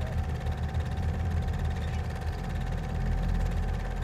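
Steady low rumble with a faint, thin, steady hum above it: the room tone of a film set held quiet before a take.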